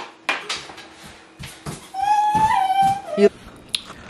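A dog whining: one high, steady whine about a second long, dipping slightly at the end. Before it come a few light clicks of a metal spoon against a plastic bowl.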